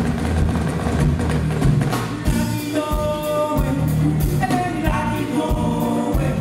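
Live African band playing: hand drums and bass keep a steady rhythm, with singing voices coming to the fore about halfway through.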